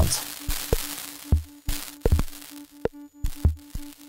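Ciat-Lonbarde Plumbutter drum-and-drama synth playing a patch: a mid-pitched tone pulsing fast, sharp clicks, and two low bass-drum thumps about two seconds apart. A hiss from its dust noise generator, patched into the ultrasound inputs, fades about a second in and comes back near the end.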